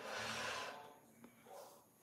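A person's short, noisy breath lasting under a second, followed by a faint click.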